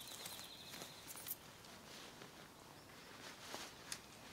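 Faint footsteps on grass and light handling sounds as a tent floor is pulled out and stretched, with a few sharp clicks. A high steady trill carries through the first second and then stops.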